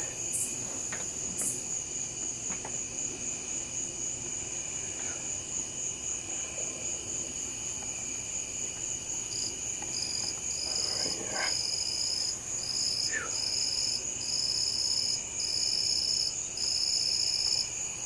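Night insects calling: a steady high-pitched trill throughout, joined about halfway through by a second insect calling in regular pulses, roughly one a second, each pulse longer than the one before.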